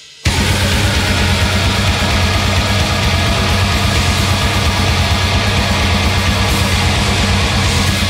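Heavy metal track playing loud, dense and driving with a heavy low end, resuming after a brief break at the very start.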